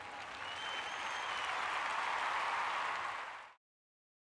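Audience applauding, swelling a little and then cut off suddenly near the end.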